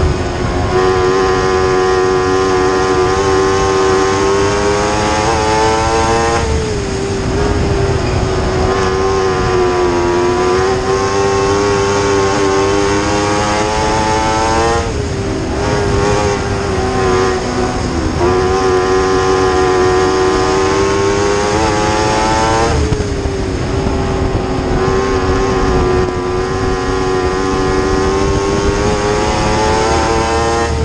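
Dwarf race car's motorcycle-derived engine at racing speed, heard on board: a loud, steady, high engine note that dips briefly and climbs again three times, about eight seconds apart, as the car goes through the turns of the dirt oval.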